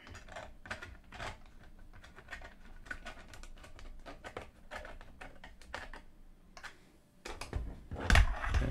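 A screwdriver turning a small screw into a portable radio's plastic back cover: a run of faint, irregular clicks and scrapes. Near the end come louder knocks as the radio is handled on the desk.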